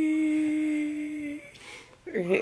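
A woman humming a long held note that fades out about a second and a half in.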